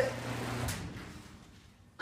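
Genie Intellicode garage door opener's motor running with a steady hum while reopening the door after its safety sensor was tripped. The motor stops with a click under a second in as the door reaches the end of its travel.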